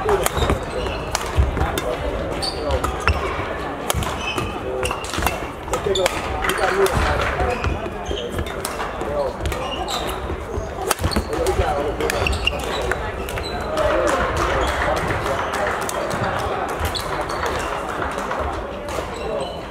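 Badminton rally: sharp cracks of rackets hitting the shuttlecock, many and irregular, from this court and neighbouring ones, with footsteps thudding on the court floor, over a steady background of voices in the hall.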